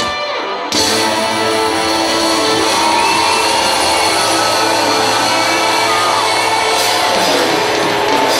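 Live band music led by electric guitar, with dense sustained chords. The sound jumps up suddenly under a second in, then holds steady and loud.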